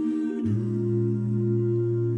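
Five-voice a cappella group humming sustained wordless chords. About half a second in, a low bass note comes in and the chord changes, then holds steady.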